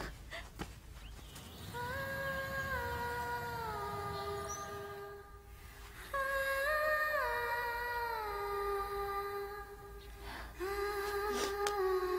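Soundtrack music: a slow, wordless melody hummed by a woman's voice, in long phrases that step down in pitch.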